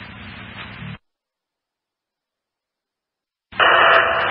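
Fire-dispatch scanner radio between transmissions: a hiss of static cuts off abruptly about a second in as the squelch closes, followed by dead silence. Near the end a louder burst of static opens as the next transmission keys up.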